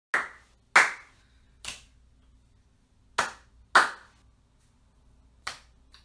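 Six sharp hand claps at uneven intervals, two of them in quick pairs, each dying away quickly.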